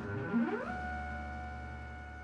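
Electronic sound effect: tones slide upward for about half a second, then settle into a steady held drone, a low hum with two higher tones, that slowly fades.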